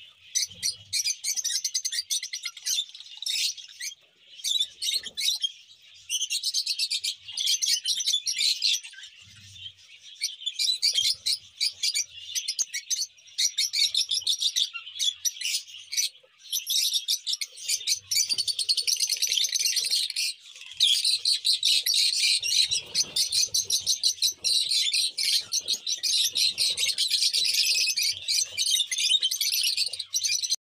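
A flock of peach-faced lovebirds, mostly lutino, chattering with a dense stream of rapid, high-pitched chirps, broken by a few brief pauses.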